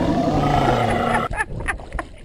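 A lion-style roar, a dense rough sound that thins out in the second half into a few sharp clicks.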